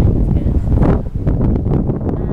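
Wind buffeting an outdoor microphone, a loud low rumble.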